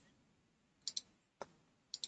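Computer mouse buttons clicking faintly: a quick double click just under a second in, a single click about a second and a half in, and another pair near the end.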